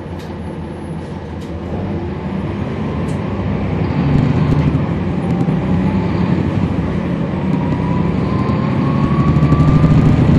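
The Cummins ISL9 inline-six diesel of a 2011 NABI 40-SFW transit bus, heard on board, running up from idle as the bus pulls away. It grows steadily louder, with a whine rising in pitch through the second half.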